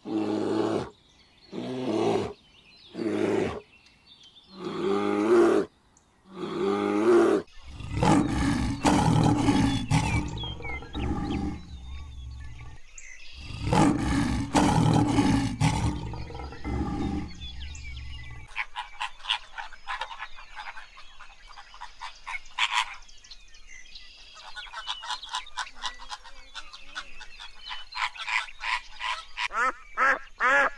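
A black bear calls in a series of short, pitched vocalizations, about one a second. Then a lion makes long, rough growls, louder and deeper, broken by one short pause. Near the end comes a fast, high-pitched chattering.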